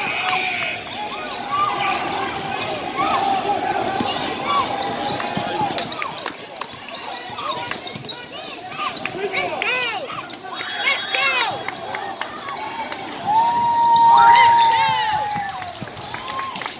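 Basketball game play on a hardwood gym floor: the ball bouncing, sneakers squeaking in short bursts, and players and spectators calling out. One long held shout is the loudest sound, near the end.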